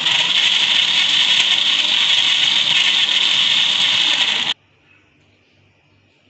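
Countertop blender running steadily, blending mango, custard, milk and ice into a shake, then switched off, cutting out suddenly about four and a half seconds in.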